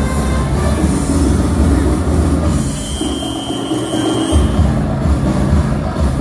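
Dance music played loud over stage speakers, with a heavy steady beat. About two and a half seconds in, the bass drops out for under two seconds while a high, steady whistle-like tone is held. Then the beat comes back in.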